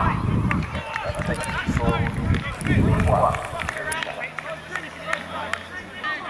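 Several voices of players and spectators talking and calling out at a football ground, with scattered sharp knocks or claps among them.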